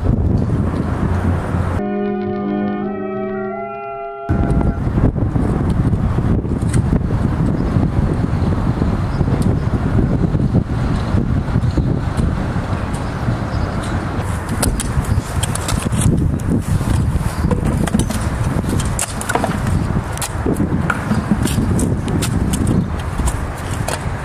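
Wind buffeting an outdoor microphone over a background of city traffic, loud and gusty with scattered knocks. About two seconds in, the noise drops out for a short musical sting of a few held notes, then the wind and traffic return.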